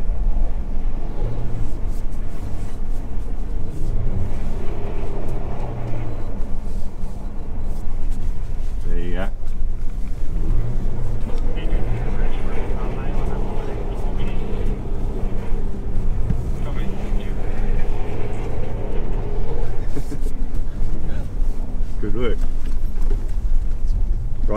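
Engine and tyre noise inside the cabin of a Ford 4x4 being driven on ice and snow, the engine note rising and falling as the throttle is worked.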